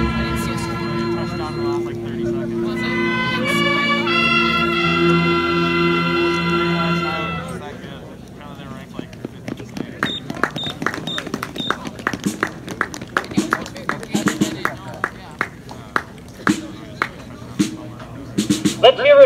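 A high school marching band holding a final sustained brass chord, which swells and then dies away about seven seconds in. After it come scattered short sharp taps and four short high beeps about ten seconds in.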